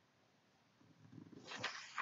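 Thin calligraphy paper rustling and crackling as a hand grips it and slides it across the table, starting about a second in and loudest near the end.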